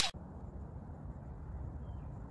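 A whoosh sound effect cuts off at the very start, followed by a low, steady outdoor background rumble.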